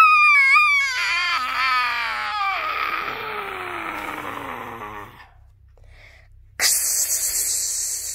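A voice holding one long, very high-pitched squealing cry that wavers and slides steadily down in pitch, fading out about five seconds in. Near the end comes a loud hissing burst lasting about two seconds.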